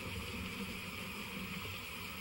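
A pause with no speech, only a steady low hiss and hum of background noise.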